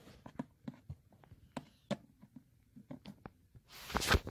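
Light, irregular clicks and taps of plastic toy horse hooves and figurine feet being set down on a wooden floor as the toys are made to walk.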